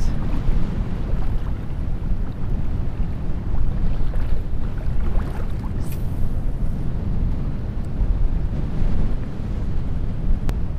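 Strong wind buffeting the microphone in a steady low rumble.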